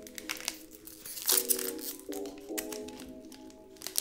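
Foil booster-pack wrapper of a Dragon Ball Super Card Game Cross Worlds pack crinkling and crackling as it is torn open by hand. Background music with sustained chord notes plays underneath.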